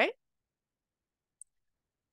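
A single faint, very short computer mouse click about one and a half seconds in, advancing a presentation slide, amid otherwise dead silence.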